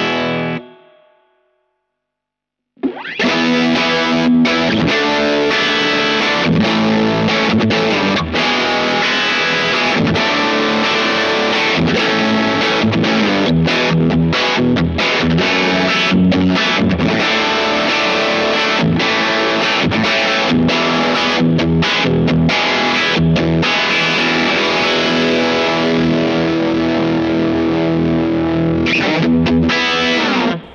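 Electric guitar (Squier Telecaster) played through a Boss OD-3 OverDrive pedal, giving a mildly overdriven tone. A phrase dies away in the first second, there is a gap of about two seconds, and the playing then resumes about three seconds in and runs on without a break.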